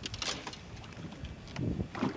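Wind on the microphone and water moving against the hull of a small fishing boat, with a brief splash about a quarter second in and a faint low voice near the end.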